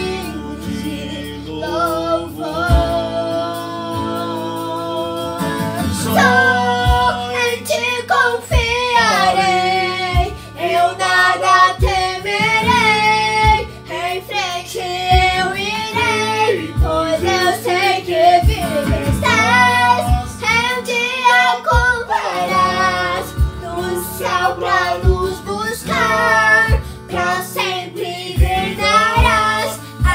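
A young girl singing a worship song in Portuguese together with an adult man, over a musical accompaniment with guitar.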